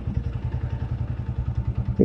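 Bajaj Avenger motorcycle's single-cylinder engine idling, an even, fast low throb.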